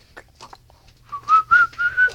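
A person whistling four short notes in quick succession, each pitched a little higher than the last.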